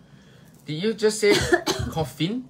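A person coughing, mixed with bits of voice, starting after a short quiet moment about two-thirds of a second in.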